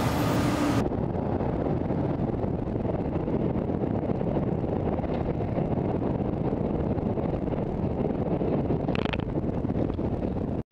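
Steady wind rumble on the microphone of a bike-mounted camera while cycling along a road, with traffic passing close alongside. In the first second, before a cut, a faint steady hum.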